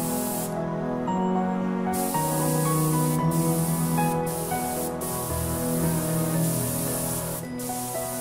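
Airbrush hissing as it sprays paint, stopping for about a second and a half near the start and cutting out briefly a few more times, under background music of sustained notes.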